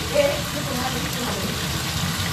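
Cubes of tofu frying in hot oil in a wok, a steady sizzle.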